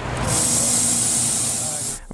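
Compressed air hissing steadily from a gas-station air pump hose pressed onto a car tyre's valve stem, filling the tyre. It starts a moment in and stops just before the voice returns.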